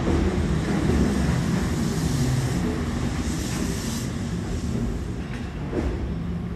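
JR 205-series electric commuter train running along the platform: a steady rumble of wheels and running gear on the rails, with a brighter high hiss from about two to four seconds in.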